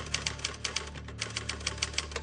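Typewriter keystrokes used as a sound effect: a rapid, even run of sharp key clicks, several a second, as a caption types itself out on screen. A low held musical note sounds underneath.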